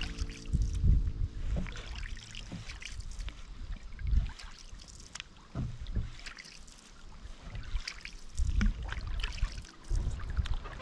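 Canoe paddle strokes in lake water, the blade dipping and pulling with small splashes and drips. Irregular low rumbles come and go underneath, loudest near the start and again near the end.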